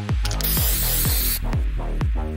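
Background electronic music with a steady beat; about half a second in, a one-second hiss from an aerosol spray paint can cuts in over it and stops abruptly.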